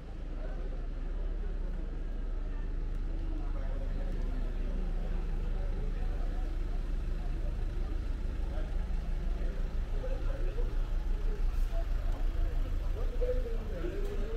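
City street ambience: a steady low rumble of a motor vehicle running, with scattered voices of passers-by. The rumble grows a little louder and pulses in the last few seconds.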